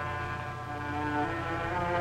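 Slow dramatic underscore of long, held notes that step to new pitches about a second in and again near the end, over a steady low hum.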